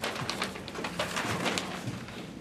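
Long fan-folded paper printout rustling and crackling as it is unfolded and shaken out, in a quick run of small crinkles.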